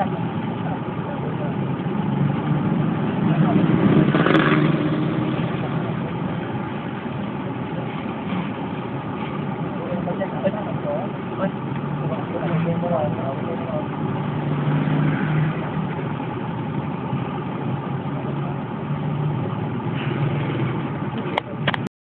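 Steady low background rumble, loudest a few seconds in, with people's voices heard at times underneath.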